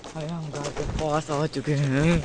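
A young man's voice speaking in short phrases; the recogniser wrote down no words.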